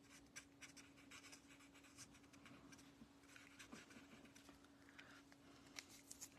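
Faint scratching of a marker tip on cardstock: short, quick colouring strokes as a pink marker fills in a stamped teacup, over a faint steady hum.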